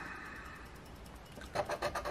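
A scratch-off lottery ticket being scraped with a round handheld scratcher: faint at first, then a quick run of short scraping strokes starting about a second and a half in.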